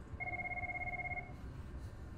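An electronic ringing tone, like a phone ring: two steady pitches pulsing rapidly together for about a second, then stopping.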